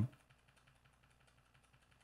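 Near silence after a man's word trails off at the very start.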